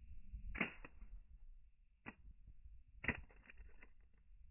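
Faint knocks of a Motorola Razr V3M flip phone landing on its back on asphalt and bouncing: one knock about half a second in, another about two seconds in, and a cluster of small clicks near three seconds in as it settles.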